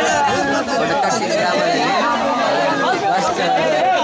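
A crowd of people talking over one another in a steady, loud babble of voices.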